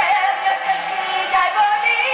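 A woman singing a pop song live into a handheld microphone, over band accompaniment.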